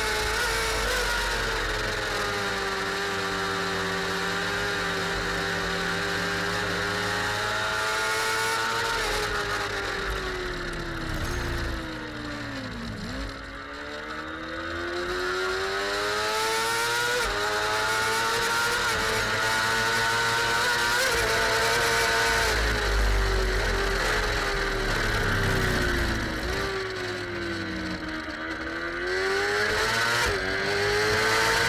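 Onboard sound of an F2 racing sidecar's engine at racing speed, its pitch holding, then stepping down through the gears. The revs fall steeply about halfway through, climb again through the upshifts, and dip and rise once more near the end.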